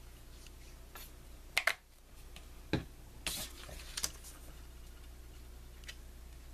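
Handling of paper and a plastic glue bottle on a craft mat: a few sharp clicks and taps (a quick pair a little after one and a half seconds in, more near three and four seconds) and a brief paper rustle, over a faint low hum.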